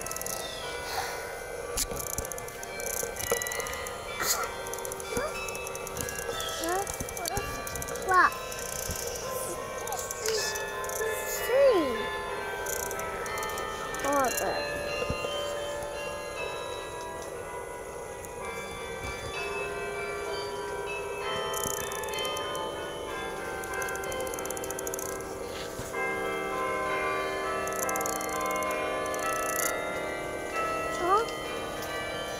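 Bok Tower's carillon bells playing a slow melody on the hour, many overlapping bell tones ringing on and decaying into one another. A few loud swooping cries cut in between about 7 and 14 seconds in.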